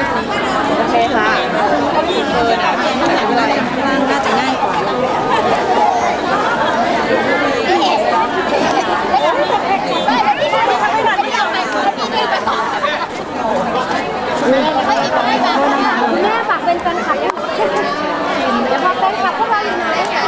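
Many people chattering at once: a steady, fairly loud babble of overlapping voices, none standing out clearly.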